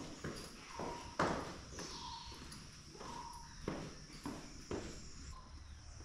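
Footsteps of shoes going down tiled stairs, a series of separate knocks about half a second to a second apart, the sharpest a little over a second in. Insects drone steadily behind.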